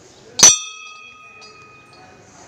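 A Hindu temple bell struck once, loud and close, then ringing on with a steady, clear tone that slowly fades.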